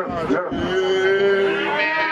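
A man's voice holding one long, steady note in a Vodou ceremonial chant.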